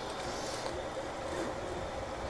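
Steady low background hum of room tone, with no distinct handling sounds.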